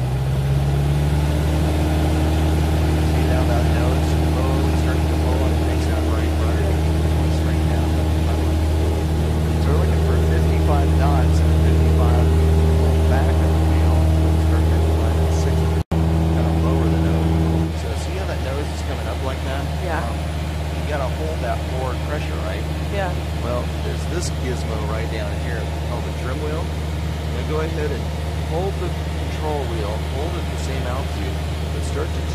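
Light airplane's piston engine running at high power, a loud, steady drone heard inside the cabin. About 18 seconds in, the engine note drops and gets quieter.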